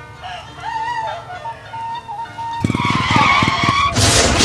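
Music at first, then about two and a half seconds in a motorcycle engine comes in suddenly and loudly as the small motorbike rides past.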